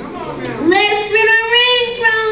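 A boy reciting in a drawn-out, sing-song voice, holding long tones that dip and then rise in pitch.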